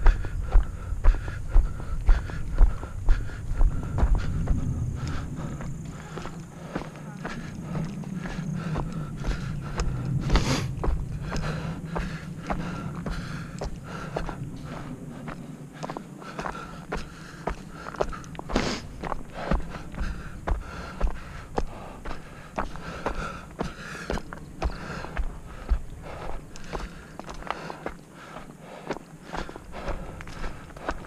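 Footsteps of a person moving along a dirt and stony hill trail, a steady rhythm of about two steps a second, heaviest in the first few seconds. Two sharper clicks stand out, about ten and nineteen seconds in.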